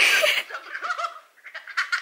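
A girl's loud, excited scream at the start, followed by a few short high cries that die away, heard over a phone video call.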